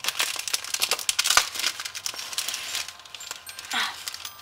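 Shiny gold foil gift wrap and ribbon crinkling as a small present's bow is pulled open by hand. The crinkling is dense for the first couple of seconds and then thins out.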